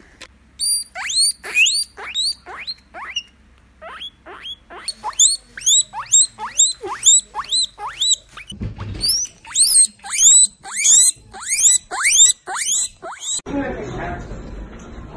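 Guinea pig wheeking: a long run of high-pitched squeaks that each sweep upward, about two or three a second, coming faster and louder in the second half. It is the excited call that guinea pigs make when food is offered, here a strawberry held to its mouth.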